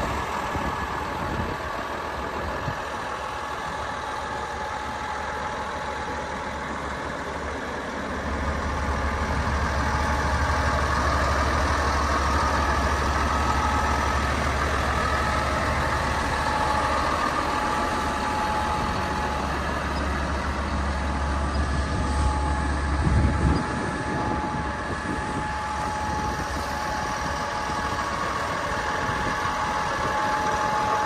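Komatsu D65PX-17 crawler dozer's diesel engine idling steadily, with a constant whine over it. A deeper low rumble swells in about eight seconds in and drops away about 23 seconds in.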